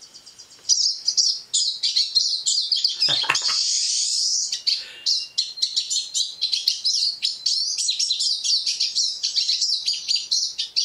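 Recording of a pine siskin's song played through a tablet's speaker: a long, rapid twittering run of high notes that starts about half a second in.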